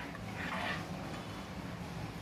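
A metal spoon stirring hot tea in a ceramic mug, heard faintly as a soft swish about half a second in, over low room noise.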